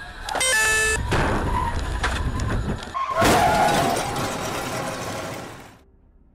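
Car crash heard from a dashcam inside the car: a short high tone near the start, then loud crashing, grinding and scraping with repeated impacts. A second, louder impact comes about three seconds in, and the noise fades away just before the end.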